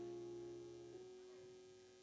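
Faint held keyboard notes, the chord shifting about a second in and fading toward near silence.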